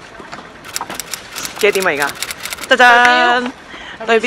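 Young women's voices: a short call falling in pitch, then one long held call near the end, with a run of quick crackling clicks in between.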